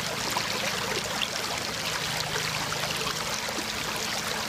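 Shallow creek running steadily over a bed of rounded stones: continuous trickling and splashing water.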